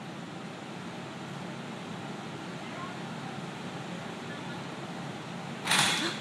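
Steady, even gym room noise from a large floor fan running, then a sudden loud crash near the end as the gymnast comes off the high bar.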